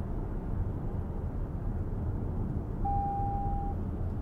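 Steady low road and drivetrain rumble inside the cabin of a 2023 Lexus RX 500h at road speed. About three seconds in, a single electronic beep sounds for just under a second.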